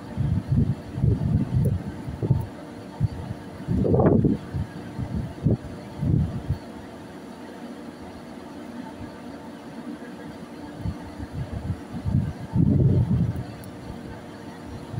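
Steady low hum of a ship's machinery, with irregular low rumbling gusts of wind buffeting the microphone, the strongest about four seconds in and again near the end.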